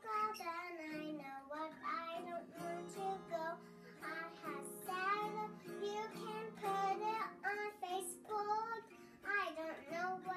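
A young child singing a melody while strumming a small guitar, the strummed strings ringing under her voice.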